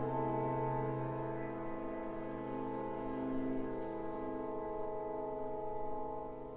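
Orchestra holding a soft sustained chord with a brass and horn colour, its notes shifting slowly within the held sound.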